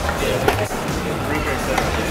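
Tennis ball impacts on racket strings and hard court during serve practice: two sharp pops just over a second apart, over a background of chatter.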